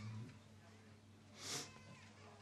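The last held note of a man chanting a prayer ends just after the start, leaving faint room tone with one short breathy hiss about a second and a half in.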